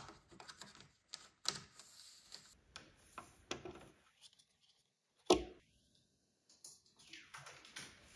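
Quiet, irregular plastic clicks and taps of a cable being handled and fitted into a cable channel and the back of a record player, with one sharper knock about five seconds in as the plug is pushed home.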